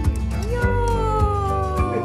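An Akita Inu's long whine, rising briefly and then sliding slowly down in pitch, over background music with a steady beat.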